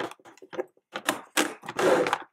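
Plastic makeup compacts clicking and scraping against each other and a clear plastic drawer organiser as they are moved by hand in a drawer: a few short knocks, then a longer scraping rustle near the end.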